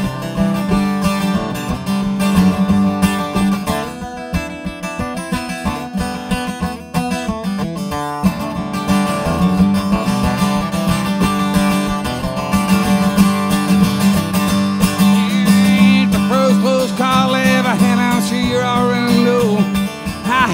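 Solo acoustic guitar strummed and picked, loud and steady, in an instrumental break. A wavering higher melody line comes in over it in the last few seconds.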